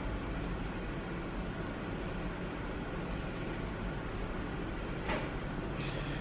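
Steady room tone: an even low hum and hiss with no distinct event, and a faint short sound about five seconds in.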